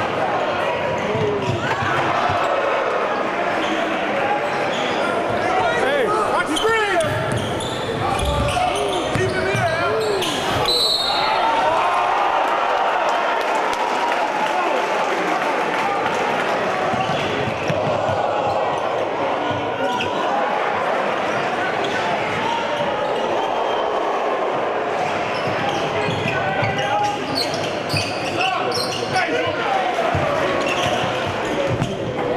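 Live gym sound during a basketball game: a ball dribbled on a hardwood court, sneakers squeaking, and the crowd chattering and calling out in a large echoing hall.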